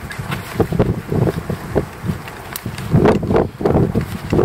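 Wind buffeting the microphone in irregular low gusts, loudest about three seconds in, with a few small sharp crackles from a wood campfire.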